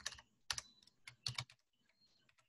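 Computer keyboard typing: a few faint keystrokes in two small groups, about half a second in and again around a second and a half in.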